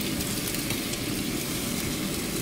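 French toast (egg-dipped bread slices) frying in butter in a pan: a steady sizzle with faint scattered crackles.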